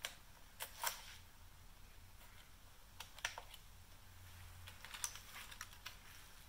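Small sharp clicks of a key and key ring being fitted into a motorcycle's ignition switch and turned, in a few short groups: near the start, just under a second in, about three seconds in and around five seconds in.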